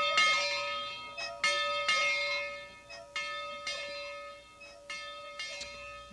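A single church bell rung by a pull rope, struck about seven times in uneven pairs, each stroke ringing on with a clear, steady tone.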